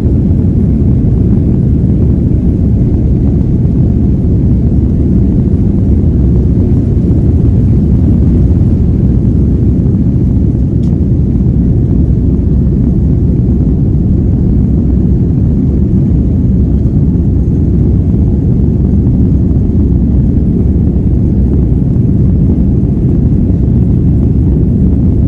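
Jet airliner cabin noise during takeoff: the engines at takeoff power and the runway roll make a loud, steady deep rumble that carries on unchanged through liftoff and the climb.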